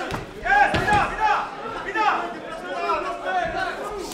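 Men's voices talking and calling out in a large hall, with a couple of sharp knocks near the start and about a second in.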